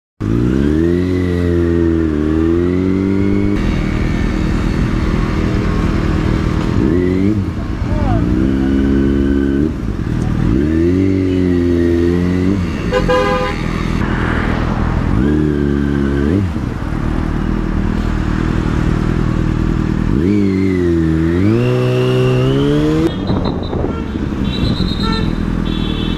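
Motorcycle engine heard from the bike, revving up and dropping back in pitch several times as it pulls away and slows in stop-and-go traffic. There is a short horn toot about 13 seconds in.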